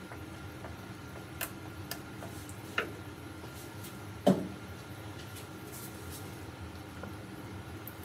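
Quiet hand-stirring of cold process soap batter, oils and lye solution being worked toward emulsion with a wooden stirring stick in a measuring jug: faint scrapes and ticks over a steady low hum, with one louder knock about four seconds in.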